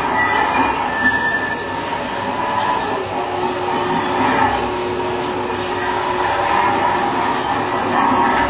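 Live improvised electronic noise music: a dense, steady grinding texture, with a low held tone coming in about three seconds in.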